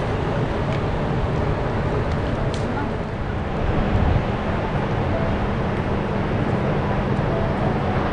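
Steady outdoor city ambience: a continuous low rumble of distant traffic, with faint voices of people.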